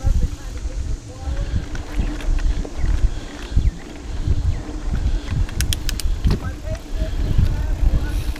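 Mountain bike riding down a dirt singletrack: a steady low rumble with irregular thumps and rattles as the bike rolls over the bumpy trail. A quick run of sharp clicks comes about six seconds in.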